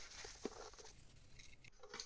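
Faint rustling of a cloth and of a violin being handled, with two soft taps in the first half second, fading to near silence after about a second and a half.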